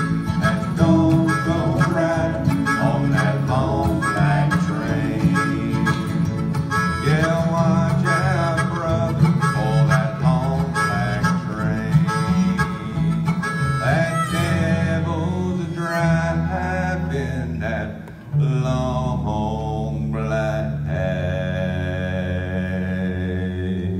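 Acoustic bluegrass band playing an instrumental break: harmonica lead over strummed acoustic guitars and upright bass. Near the end the playing dips briefly, then comes back with long held notes.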